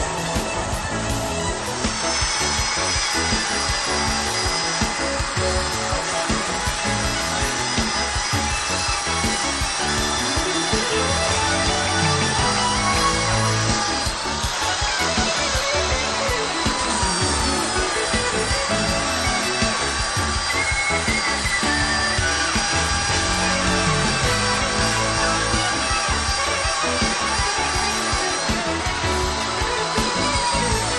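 Background music mixed with a handheld electric belt sander running on a wooden panel, sanding down the rough, misaligned spots.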